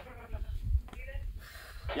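Brief, faint, wavering vocal sounds from a person over a low rumble of wind on the microphone, then a short "yeah" of encouragement right at the end.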